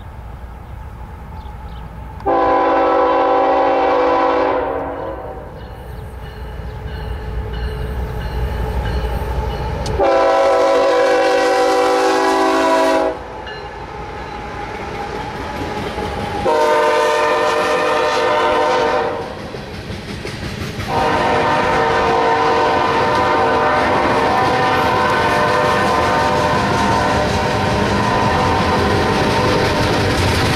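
Multi-chime air horn of a BNSF GE Evolution-series diesel locomotive blowing four blasts, the last held long, the grade-crossing signal. Under the horn the locomotive's engine rumbles as it approaches, then the train passes close with the rumble and clatter of its coal cars.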